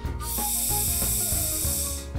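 Gas hissing out as the screw cap of a plastic bottle of fermenting kamdi, a Korean rice drink, is slowly loosened. The steady hiss starts just after the beginning and cuts off near the end. The pressure shows that the drink has built up a lot of carbon dioxide and is strongly fermented.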